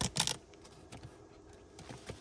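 A few quick plastic clicks and rattles as the leveling system's removable touchscreen control module is pulled out of its seat-back dock, then a couple of faint small taps.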